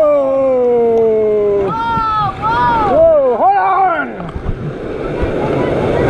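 Rafters yelling while running a rapid: one long cry sliding down in pitch over the first couple of seconds, then several shorter shouts. Rushing white water fills the second half.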